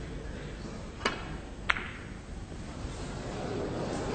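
A snooker shot: two sharp clicks about two-thirds of a second apart, the cue tip striking the cue ball and then the cue ball hitting an object ball. The second click is the louder, over the quiet hush of the hall.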